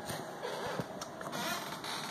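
Faint rustling and scraping handling noise as a handheld camera is swung around, with a few light ticks.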